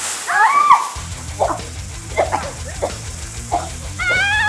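Girls screaming in fright: one loud shriek that rises and falls near the start, then shorter cries. Background music with a steady bass runs under them.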